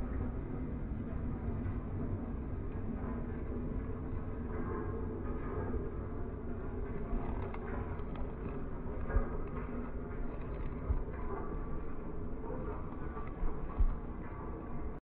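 Case IH Quadtrac tractor working under load, pulling a Quivogne Tinemaster disc cultivator through dry stubble: a steady low rumble of engine and discs, with a few sudden knocks in the second half.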